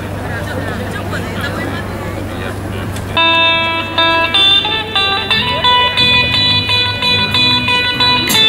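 Low chatter of a gathered crowd, then about three seconds in guitar music starts suddenly with clearly plucked notes and carries on.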